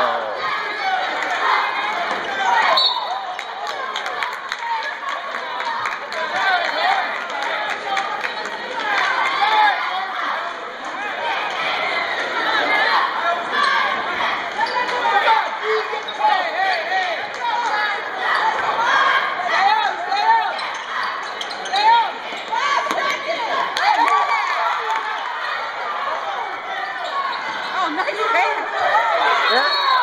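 Basketball bouncing on a hardwood gym floor amid the voices and shouts of spectators in the bleachers.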